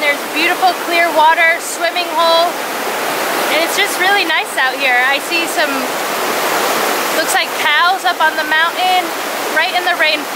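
Small waterfall cascading over rock slabs, a steady rush of water that carries on under a woman's talking and is heard on its own in brief pauses.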